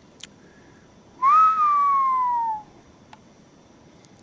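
A single whistled note about a second in that rises briefly and then glides slowly down in pitch over about a second and a half.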